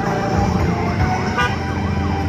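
Loud dance music from a mobile parade sound system: a heavy, regular bass beat under a siren-like sweep that rises and falls over and over. A brief high-pitched blip sounds near the end.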